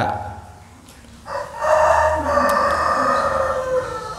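A rooster crowing: one long call starting about a second in and dropping slightly in pitch as it ends.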